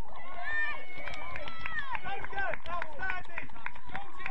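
Voices calling out across an outdoor football pitch during play, many short shouts overlapping, with scattered short knocks among them.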